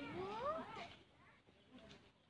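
A single drawn-out, meow-like call rising in pitch through the first second, then fading out.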